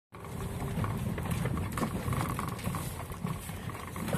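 Inside the cabin of a Lada Niva driving slowly over a rocky dirt track: a low engine and road rumble with frequent knocks and rattles as the car jolts over stones.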